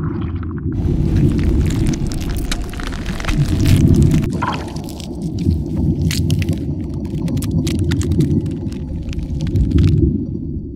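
Cinematic sound effects of an animated logo intro: a loud, continuous deep rumble with sharp crackling hits and whooshes layered over it.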